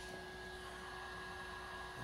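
Faint steady background hiss with a thin, steady high-pitched whine and a fainter lower tone.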